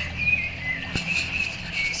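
Small birds chirping and twittering in the background over a steady low hum, with a single sharp click about a second in.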